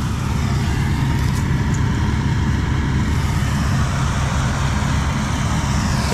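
Combine harvester, the Massey Ferguson 86, running steadily with a low, even engine drone.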